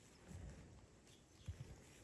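Faint, soft thuds of a Merino ram's hooves stepping on dry, grassy ground, one around half a second in and another around one and a half seconds, over near silence.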